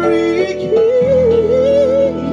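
Live band of piano, bass and drums playing while the lead singer sings a wordless ad-lib: a held note, then a higher wavering line with vibrato from about a second in.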